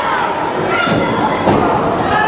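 A heavy thud as a wrestler's body hits the ring mat about one and a half seconds in, with a lighter knock just before, over a crowd shouting.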